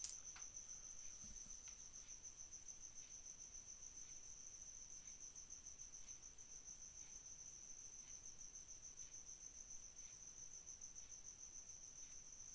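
A faint, steady high-pitched trill from a cricket, over otherwise near-silent room tone, with a few faint clicks.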